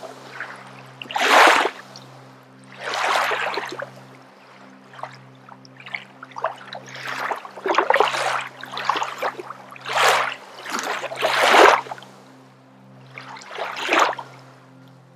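A woman's forceful exhalations through the nose in kundalini breath of fire. First come a few longer breaths about two seconds apart, then a quick run of short pumping breaths, about three a second, over a soft background music drone.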